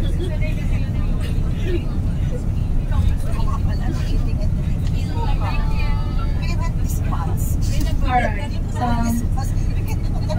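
Steady low rumble of a tour coach's engine and road noise heard inside the passenger cabin, with scattered passenger voices over it, clearest about halfway through and near the end.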